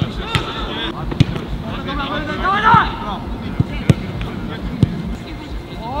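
Footballs being kicked hard on a grass training pitch: five sharp thuds spread over a few seconds, about a second apart. A player's shout comes about halfway through.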